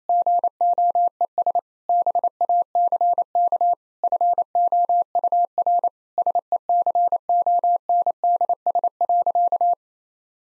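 Morse code sent at 28 words per minute as a single steady pure tone keyed on and off in dots and dashes. It spells out the repeated punchline "IT GOES BACK FOUR SECONDS" in several word groups and stops near the end.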